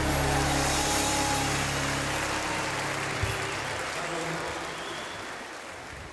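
Audience applauding at the end of a song, over the band's last held low chord, which stops about two and a half seconds in; the applause then fades out.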